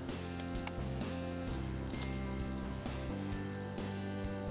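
Instrumental background music of steady held notes that change every second or so, with a few faint clicks and rustles from a paper instruction booklet being handled.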